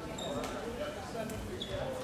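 Floorball play in a sports hall: sharp clicks of sticks and the plastic ball, short high squeaks of shoes on the court floor, and voices of players calling out, all with the hall's echo.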